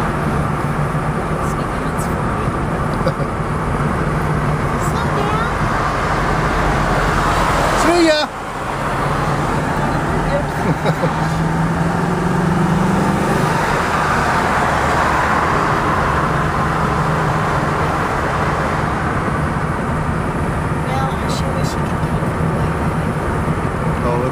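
Engine and road noise heard from inside a moving vehicle's cabin, a steady low hum over tyre rumble. A little after a sudden brief drop in level, the engine note rises for a couple of seconds as the vehicle speeds up, then settles again.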